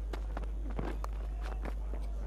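Cricket ground sound from the pitch microphones during a delivery: a run of light knocks and footfalls, with one sharper crack about a second in as the bat strikes the ball. A low steady hum runs underneath.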